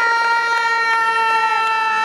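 Siren of the police motorcycles escorting the race, held on one steady high pitch.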